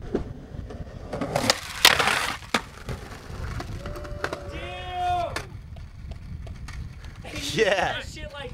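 Skateboard clattering on concrete: two sharp cracks about one and a half to two seconds in, then a lighter knock. Wind rumbles on the microphone throughout. A voice gives a long call about halfway through, and another voice comes near the end.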